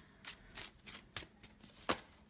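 A deck of oracle cards being shuffled and handled by hand: a string of short, crisp card snaps, about six in two seconds, the loudest near the end.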